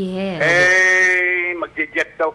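A single long, drawn-out bleat held for about a second, over the end of a man's low voice.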